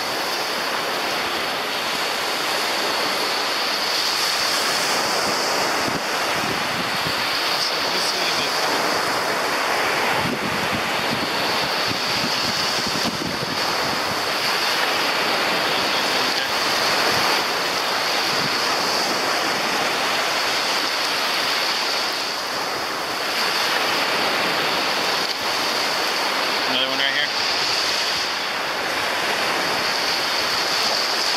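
Gulf surf washing steadily onto the beach, with wind on the microphone.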